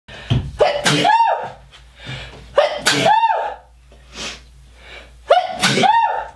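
A man sneezes three times, about two and a half seconds apart, each a rising intake of breath followed by a loud, voiced "choo".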